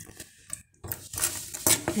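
Kitchenware being handled: a faint rustling hiss and a few sharp clicks and knocks near the end, as dishes are moved.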